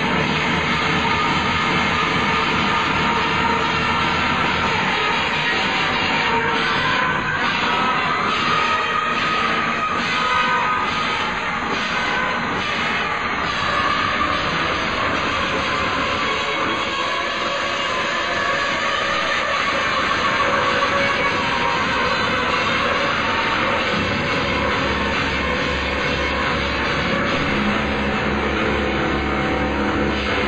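Live band playing loud, continuous post-punk music, a dense wall of sound with no breaks; a deep bass comes in near the end.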